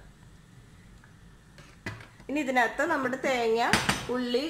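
Mostly quiet, then a sharp click about two seconds in and a louder knock near the end: kitchen clatter of a plastic oil bottle and a nonstick pan as oil is poured in and the bottle is put away.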